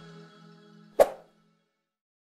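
Outro music fading out, with a single short pop sound effect about a second in, the click of an animated on-screen subscribe button.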